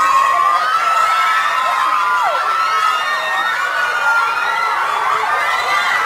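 A crowd of fans screaming: many high-pitched voices in long, overlapping shrieks that go on without a break.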